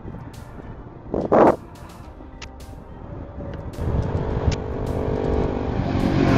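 Motorcycles approaching on the road, their engine sound growing louder from about three and a half seconds in, over a steady rush of wind and road noise on the camera's microphone. A short, loud rush of noise comes about a second in.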